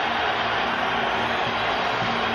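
Steady crowd noise in an ice hockey arena, heard through a TV broadcast, with a faint low note held on and off underneath.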